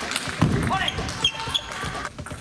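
Table tennis rally: the ball clicks against rackets and the table in quick single hits. About half a second in, a voice calls out loudly as the point ends.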